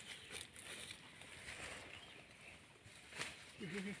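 Quiet outdoor background with a few faint, scattered knocks or rustles. A man's voice starts just before the end.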